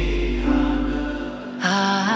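Background music: a held deep bass note fades away, then a wavering high melody comes in about one and a half seconds in.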